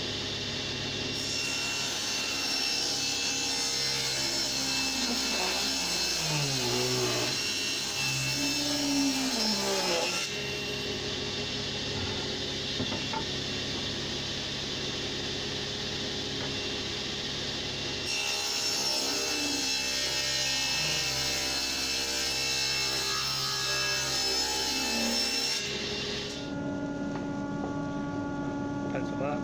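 Table saw ripping beech boards lengthwise in two long cuts, the motor's pitch sagging under load as the wood is fed. Between the cuts the saw runs free.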